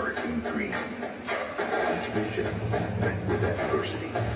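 Indistinct voices with background music and a low steady hum that grows stronger about halfway through.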